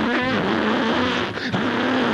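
A man's voice imitating a car peeling out, making a harsh, buzzing engine-and-tyre noise into a handheld microphone for about two seconds.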